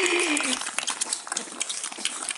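Staffordshire Bull Terrier puppies suckling at their mother's teats: a run of quick, wet sucking and smacking clicks.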